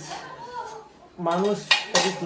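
Kitchenware clinking, with two sharp clinks near the end and a person's voice just before them.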